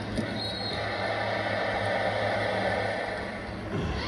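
Arena crowd noise from a volleyball broadcast, heard through a television's speakers, swelling through the middle and easing off near the end over a steady low hum.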